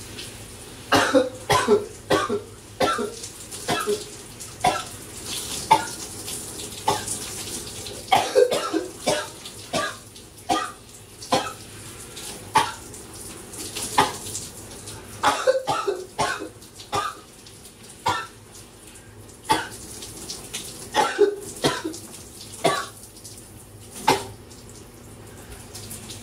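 A man coughing in repeated fits, clusters of three to five harsh coughs every few seconds, over the steady hiss of running shower water. It is a throat cough that won't let up, which he puts down to a bug in his throat.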